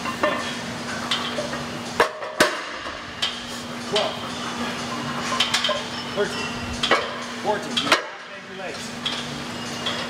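Metal weight-training equipment clanking: sharp knocks and clinks of a Smith machine bar and iron weight plates every second or two during a set of calf raises, over a steady low hum.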